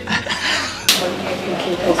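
People talking, with a single sharp click a little under a second in.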